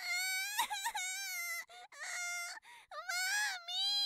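A young child's voice wailing in four long, high-pitched, wavering cries with short breaks between them.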